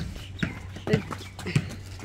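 Footsteps on a paved lane, about two steps a second, over a steady low hum.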